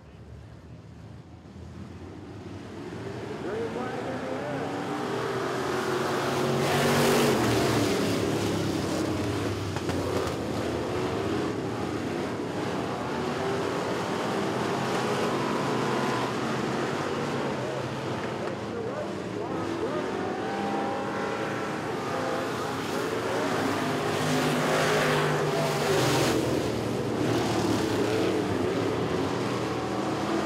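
A pack of street stock dirt-track cars at racing speed, their V8 engines revving hard. The sound builds over the first several seconds as the field accelerates. Engine pitch rises and falls as cars pass, loudest as the pack sweeps by about seven seconds in and again near twenty-five seconds.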